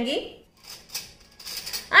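A silicone spatula stirring thick, coarsely ground chana dal batter in a glass bowl, with soft, irregular scraping against the glass.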